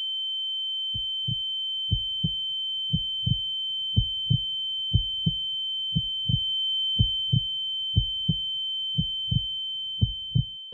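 Heartbeat sound effect, a double thump about once a second, starting about a second in, over a steady high-pitched tone held throughout.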